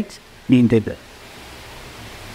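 A man's voice speaks briefly, for under half a second, then there is a steady low hiss of background noise.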